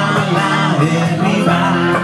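Live music: two guitars, one of them electric, playing a song, with a man singing over them.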